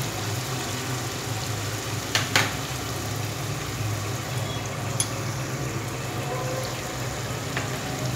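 Tomato-and-spice masala bubbling and sizzling steadily in oil in an aluminium pressure cooker, over a low steady hum. Two faint knocks come about two seconds in and a short click at about five seconds.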